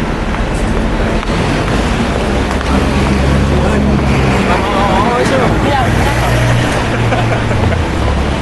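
Street noise: a vehicle engine rumbling close by, loudest in the middle and latter part, over general traffic, with indistinct voices partway through.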